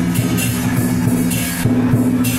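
Lion dance percussion playing: drum beats with repeated cymbal clashes over a sustained low ringing.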